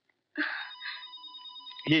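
A telephone ringing with a steady electronic trill of several high tones held together, starting about half a second in.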